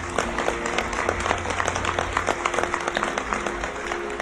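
Audience applause, a dense patter of many hands clapping, over a soft, steady music bed whose low drone fades out about halfway through.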